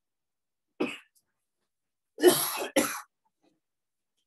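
A person coughing: one short cough about a second in, then two louder coughs back to back a little after two seconds.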